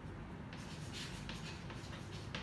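Chalk writing on a chalkboard: a run of short scratchy strokes that begins about half a second in.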